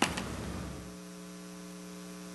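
Electrical mains hum in the microphone and sound system: a steady buzz with a row of evenly spaced tones that sets in just under a second in, after a brief click at the start.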